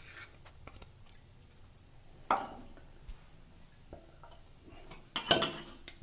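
A few scattered clinks and knocks of metal kitchenware, the loudest about two seconds in and a quick run of them near the end.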